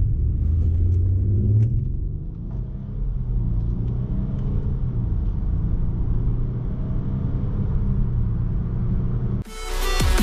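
Range Rover Sport's six-cylinder engine under hard acceleration from a standstill to over 70 km/h, heard from inside the cabin, its note rising through the gears with a brief dip at a shift about two seconds in. Music cuts in abruptly near the end.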